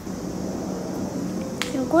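A single sharp snap about one and a half seconds in, as hands work among the pods of an okra plant, over soft low murmuring voices; a voice starts just after it.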